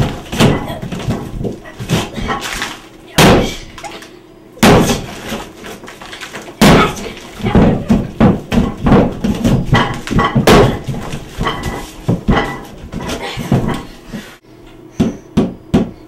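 A hammer striking a wallpapered wall again and again in an uneven run of blows, some hard and some lighter, knocking holes in the wall.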